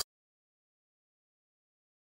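Silence: the sound track drops to nothing at all.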